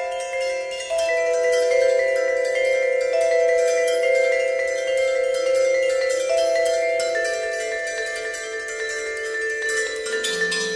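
Solo vibraphone played with mallets: a slow passage of mid-range notes, each ringing on for a second or more and overlapping the next.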